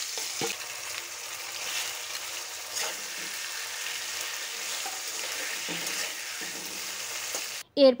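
Marinated crab pieces sizzling in hot oil in a steel korai, stirred with a metal spatula that knocks and scrapes against the pan now and then. The steady sizzle cuts off suddenly near the end.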